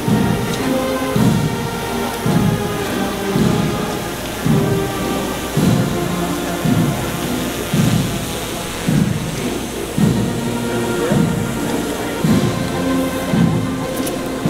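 Slow march played by a band: a bass drum beating about once a second under held brass notes.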